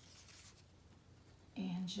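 Faint rustle of paper being handled, as a cut paper strip is laid and smoothed onto a sheet of paper; a woman's voice begins near the end.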